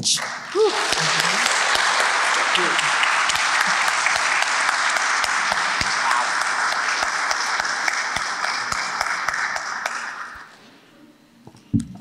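Audience applauding for about ten seconds, then fading out.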